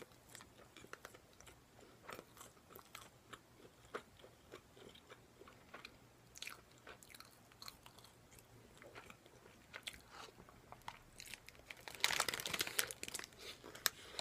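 Close-miked chewing of a breaded, deep-fried menchi katsu (minced-meat cutlet), its crisp crumb crunching in scattered small clicks. The crunching is louder and denser near the end.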